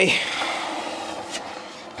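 A skateboard wheel spinning freely on its bearings, a steady whir that slowly dies away as the wheel runs down. The bearings have been blown clean with compressed air and are not oiled.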